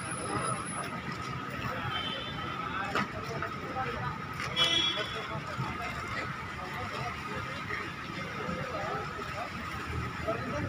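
Street ambience: a murmur of voices and traffic noise, with a brief high-pitched call just before halfway.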